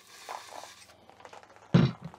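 Faint handling rustle, then a single sharp thunk near the end as a plastic pump sprayer is set down on a table.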